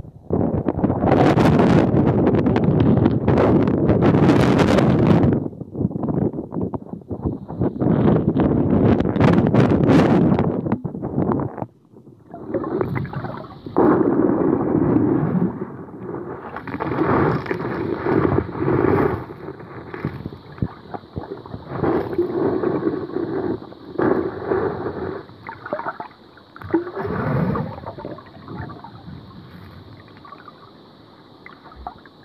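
Muffled sloshing and gurgling of water around a submerged phone microphone, heaviest for the first five seconds, then coming in irregular surges. A faint steady high tone runs through the second half.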